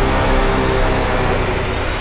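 Loud, steady rushing noise like a jet engine, a drama soundtrack effect, over fading background music.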